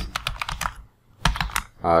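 Computer keyboard being typed on: a quick run of keystrokes, a short pause about a second in, then another run of keystrokes.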